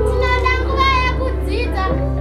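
Children singing a song, their voices holding and bending long sung notes over a steady, sustained low instrumental backing.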